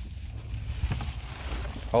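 Low rumble with a few soft knocks and shuffles from someone stepping and moving things about among stored clutter; a man says "Oh" at the very end.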